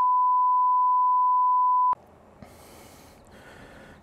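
A steady 1 kHz censor bleep, laid over a swear word, for about the first two seconds, then it cuts off abruptly to faint background hiss.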